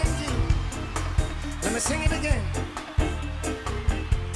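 Live reggae band playing: a deep, repeating bass line under regular sharp drum hits, with a bending melodic line above.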